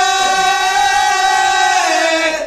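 Male voices of an Odia Pala troupe holding one long sung note together, which fades near the end.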